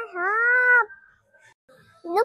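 A young girl's high voice holding one long note that bends up and down a little, followed by a short pause.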